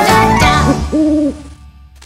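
The last sung 'da la da la da da' of a children's song over music ends about half a second in. A cartoon owl's hoot follows: a short blip, then one longer held hoot about a second in, before the sound fades.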